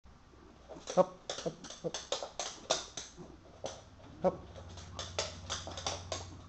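Schnauzer's claws clicking and tapping on a wooden floor as the dog steps and turns, a quick irregular run of sharp taps.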